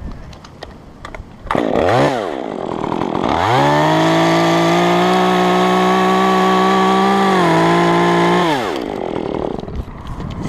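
Stihl top-handle two-stroke chainsaw blipped once, then held at full throttle while cutting through a limb, the pitch dipping slightly near the end of the cut before it drops back to idle.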